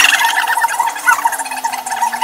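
Electric hair clippers running with a steady hum.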